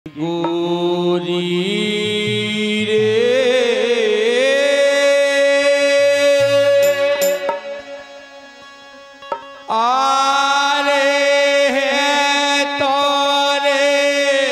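A male singer holding long, wavering notes of a rai folk song over a steady harmonium drone. The music falls away for about two seconds past the middle, then comes back in loud.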